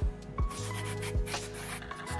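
A few short scrubbing strokes on a plastic phone part, over background music with a steady bass line.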